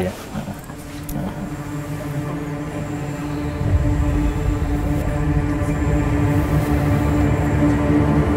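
Eerie background music: a sustained drone holding one steady note, swelling slowly, with a deep rumble building underneath from about halfway through.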